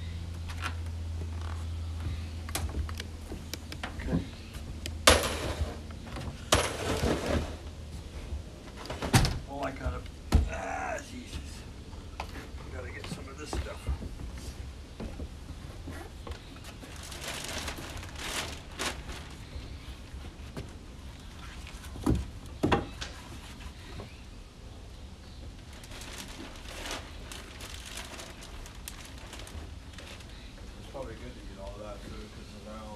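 Scattered knocks and thuds, clustered in the first dozen seconds and again about 22 seconds in, with faint voices behind them.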